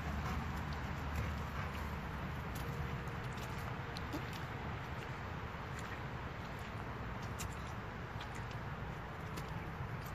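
Labradors drinking from a bowl: faint scattered lapping clicks and splashes over a steady low rumble.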